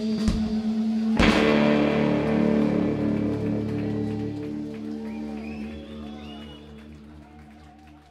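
A live rock band's electric guitar and drums holding a chord, with one loud hit about a second in, after which the chord rings on and fades away.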